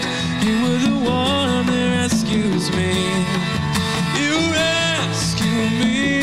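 Live worship music: a man singing a slow melody over his own acoustic guitar strumming, with hand-played conga drums.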